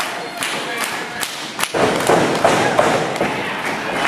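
Thuds and knocks on a wrestling ring, several in quick succession, with spectators' voices shouting and chattering louder from about halfway.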